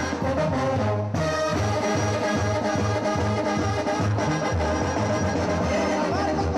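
Brass band playing live: trumpets and trombones over a steady low brass bass line, with a short break in the upper horns about a second in.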